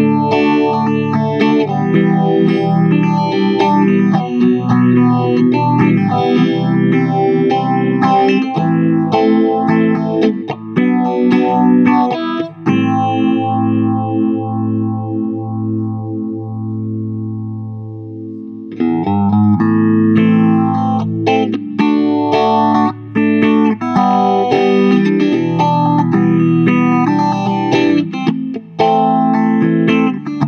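Electric guitar through an Electra 875 Phase Shifter into a Mesa/Boogie Mark V:25 amp and a Marshall 4x10 cabinet, with a slight overdrive and a sweeping, swirling phase effect on the notes. Chords and riffs are played, then about twelve seconds in a chord is left to ring and fade for several seconds before the playing picks up again.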